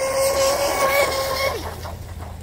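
High-pitched whine of an RC speedboat's 4,000 kV electric motor running at speed, holding a steady pitch, then fading out about a second and a half in.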